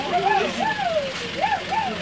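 A young child's high voice calling out in a string of short, sing-song syllables, over the steady hum of the safari bus.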